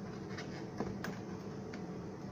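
A few faint clicks and taps from plastic water tubing being worked onto a plastic inlet fitting, the sharpest a little under a second in, over a steady low room hum.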